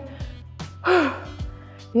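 Background workout music with a steady beat, and a woman's breathy, voiced exhale with a falling pitch about a second in, winded after a hard cardio interval.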